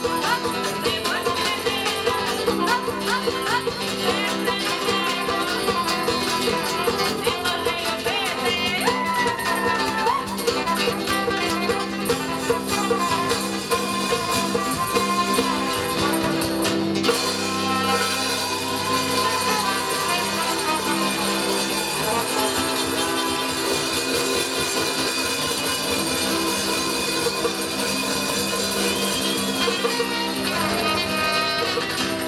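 Live acoustic folk music: a woman's voice singing over a strummed acoustic guitar, acoustic bass guitar and hand percussion with a steady beat. The texture shifts about halfway through.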